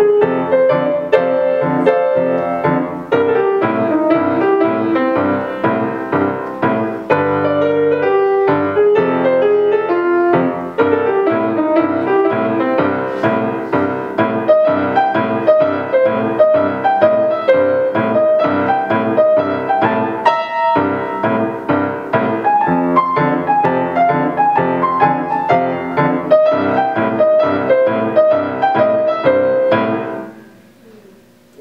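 Hailun grand piano played solo: an upbeat boogie piece with many quick notes. The playing stops right at the end.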